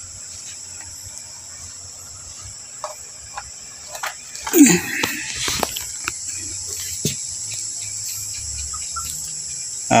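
Steady high-pitched chirring of crickets in the background, with a few light clicks and a short louder rustle about halfway through as the TV's power cord is handled and plugged in.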